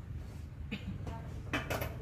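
Faint light clicks and knocks of a scooter's plastic side body panel being handled, over a low steady background rumble.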